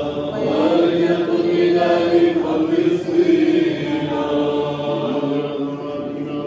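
Eastern Orthodox Byzantine chant: voices singing a church hymn in long held, melismatic notes.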